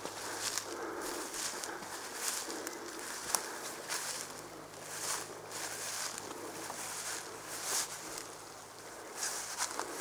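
Footsteps of a person walking through tall grass and ferns, with plants swishing against the legs at each step, roughly once a second. There is one sharp click a little over three seconds in.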